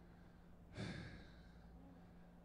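A man's single breathy exhale, like a sigh, into a handheld microphone about three-quarters of a second in, fading within half a second. Under it a faint steady hum, otherwise near silence.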